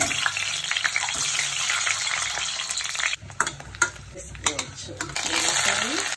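Hot oil sizzling and spitting in a stainless-steel kadai as ingredients are dropped in for tempering. The sizzle fades about three seconds in, with a few sharp clicks. It swells again near the end as chopped onions, green chillies and curry leaves go into the oil.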